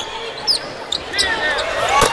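Basketball game court sounds: sneakers squeak sharply a few times on the hardwood during play, over the steady murmur of the arena crowd.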